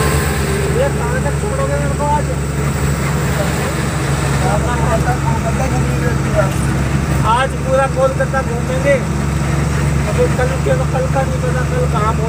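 Truck diesel engine running steadily under load while driving, heard from inside the cab as a constant low drone, with people talking and laughing over it.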